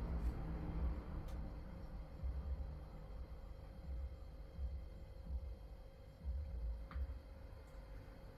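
A man drinking lager from a glass in a quiet room: soft low thuds come and go, with a couple of small clicks, over a faint steady hum.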